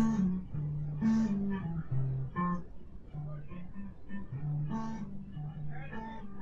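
A guitar played softly, one low note at a time, each note ringing briefly before the next, with firmer plucks about a second in, around two and a half seconds and near five seconds.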